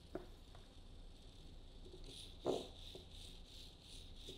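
A small Ozobot line-following robot drives along a paper track, its tiny motors giving a faint, steady high-pitched whine. The whine pulses more strongly in the second half, with a few soft clicks, the clearest about two and a half seconds in.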